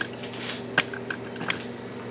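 Steady low electrical hum with three or four light clicks spread through it.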